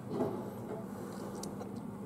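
Faint scratching and light ticks of fingers fiddling with the small screw and parts of a mechanical vape mod's button, over a steady low hum.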